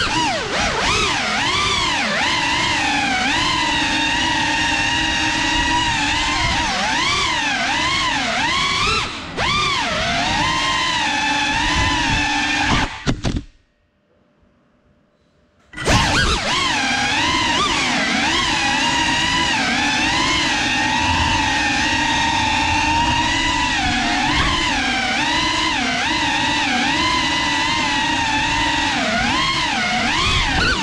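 GEPRC Cinelog 35 FPV cinewhoop's brushless motors and ducted props whining, the pitch rising and falling with the throttle. About halfway through the motors cut out abruptly for about two seconds, then spin back up.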